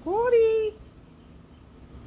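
Domestic cat meowing once, a call of under a second that rises in pitch and then holds steady.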